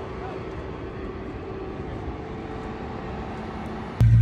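Steady low background rumble of vehicle engines with a faint constant hum, unchanging throughout.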